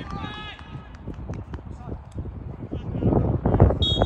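Players shouting on a football pitch, then near the end a referee's whistle blows a single held blast, signalling the set piece to be taken.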